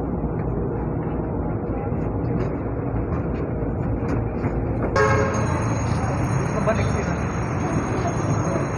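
Steady rumble inside a crowded MRT-3 train car as it pulls into the station. About five seconds in, the sound suddenly opens up with a high hiss and a brief horn-like tone as the doors open onto the platform.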